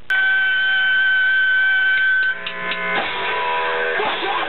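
Amplified electric guitar ringing with a loud, steady high note, then about three seconds in the rock band comes in with full instruments.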